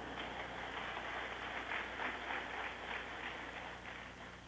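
Audience of schoolchildren clapping in a hall: a dense, even patter of many hands that thins out near the end.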